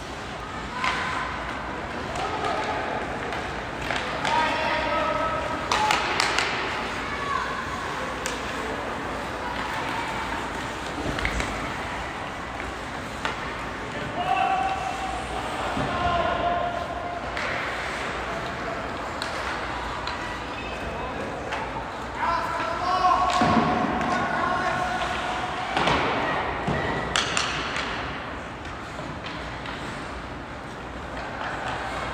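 Ice hockey play in a large arena: several sharp knocks and thuds of pucks and sticks against the boards, under unintelligible shouts from players and spectators.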